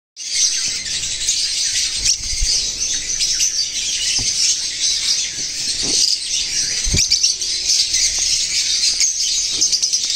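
A flock of lovebirds chattering: dense, continuous high-pitched chirping from many birds at once, with a few faint knocks mixed in.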